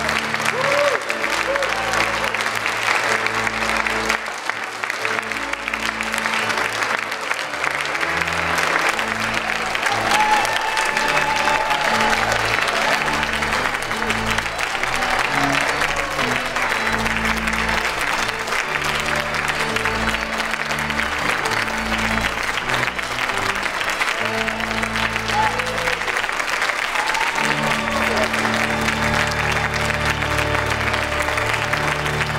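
An audience clapping steadily and continuously, over music of long held low chords that change every second or two, with some voices in the crowd.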